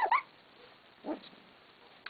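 Three-week-old F1 standard goldendoodle puppy giving a short, high-pitched whimper, followed by a fainter one about a second later.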